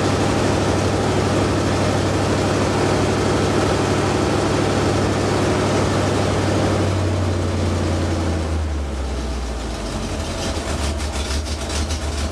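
1977 Chevy pickup's small-block V8 running at a fast idle, then settling to a lower idle about eight seconds in, after which the firing pulses come through as an even beat. The carburettor has no choke, so the engine is held at high rpm until it warms up.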